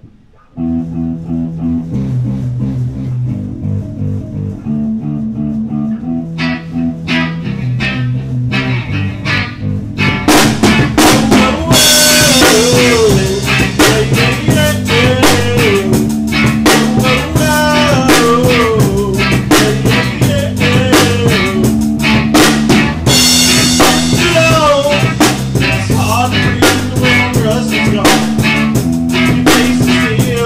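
A small rock band playing live: an electric bass line starts about half a second in under light drumming. About ten seconds in, the full drum kit comes in with cymbal crashes. Soon after, an electric guitar plays a lead with bending notes over the bass and drums.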